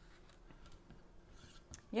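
Faint, soft brushing of a paintbrush laying milk paint onto a wooden board, a few light scratchy strokes. A woman's voice starts right at the end.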